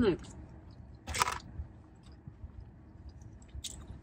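Eating sounds from fried cheese curds: a short crunch about a second in, then faint chewing and small handling noises.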